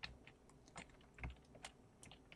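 Faint clicks of computer keyboard keys, about five separate presses spaced irregularly.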